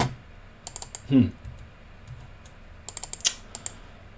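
Computer keyboard keys being tapped: a few clicks a little under a second in, then a quick run of keystrokes about three seconds in.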